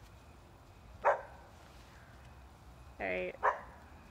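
A dog barking: single short, sharp barks about a second in and again near the end, with a brief voice-like sound just before the second bark.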